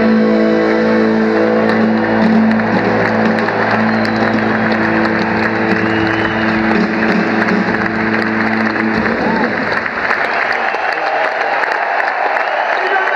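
A live band's final held chord ringing out over audience applause. The chord stops about nine seconds in, leaving the clapping.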